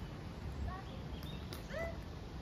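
Two short, pitched animal calls, one a little under a second in and another near the end, with faint high chirps between them, over a steady low rumble.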